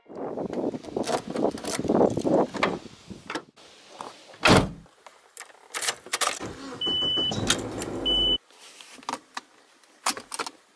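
Sounds of getting into a car: handling noises and keys jangling, a loud thump about four and a half seconds in as the car door shuts, then the key going into the ignition with two short high beeps.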